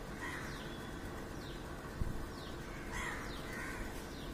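A crow cawing, once just after the start and twice near the end, over another bird's short high falling chirp repeated about once a second. A single dull thump comes midway.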